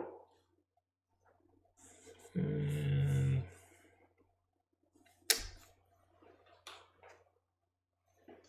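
A low voice held on one note for about a second, like a hum, then one sharp tap a couple of seconds later, among faint handling noises.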